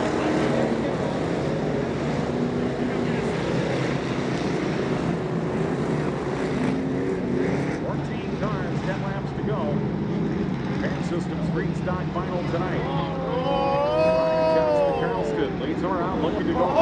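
A pack of dirt-track street stock race cars' V8 engines running at low pace behind the pace line, a steady engine drone. Near the end several engines rev up and drop back as the field lines up double file for a restart.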